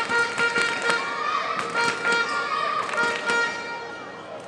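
A badminton rally on an indoor court: short, high squeaks of court shoes on the hall floor and sharp taps of racket strings on the shuttlecock, dying down near the end.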